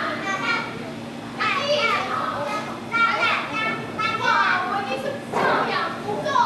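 A group of young children calling out and chattering together in overlapping high-pitched voices, in several bursts.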